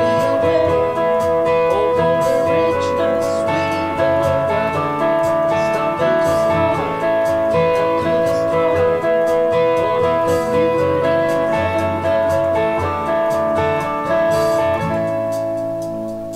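Fender Stratocaster through a Fender Blues Junior amp with mild overdrive from a booster and Tube Screamer, playing a repeating ostinato on the second, third and fourth strings that changes as few notes as possible as the chords change. It plays over the song's backing track and dies down near the end.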